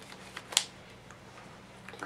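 Sleeved trading cards being handled on a table: one sharp click about half a second in and a couple of faint ticks, over a faint steady hum.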